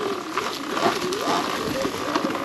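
Sur-Ron Light Bee X electric dirt bike's motor whining, its pitch wavering up and down with the throttle, over a steady rushing noise as it rolls along a leaf-covered trail.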